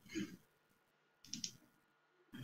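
Near-silent room tone with two faint, short clicks, one about a quarter-second in and one about a second and a half in.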